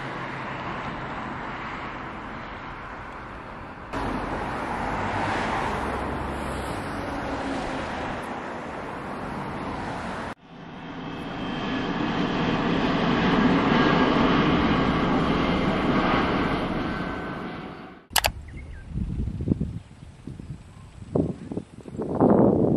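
Steady road and traffic noise, then after a cut a jet airliner passing low overhead, its engine noise swelling to a peak and fading away over about seven seconds. Near the end there is uneven, gusty noise.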